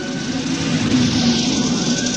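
A rushing noise with a low rumble swells to a peak about a second in and then fades, over orchestral music.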